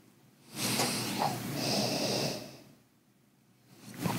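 A long sniff through the nose at a glass of beer, smelling its aroma. It starts about half a second in and lasts about two seconds.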